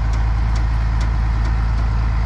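Tractor engine idling with a steady, low rumble that does not change.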